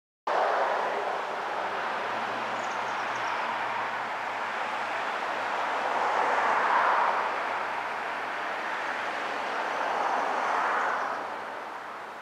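Outdoor traffic ambience: a steady rush of road noise that swells twice, as vehicles pass, with a few faint high bird chirps.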